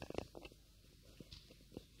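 Faint scattered knocks and rustles from a handheld microphone being handled as it is passed from hand to hand.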